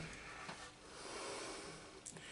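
Faint, slow breathing close to the microphone, swelling and fading, with a light click about a quarter of the way in.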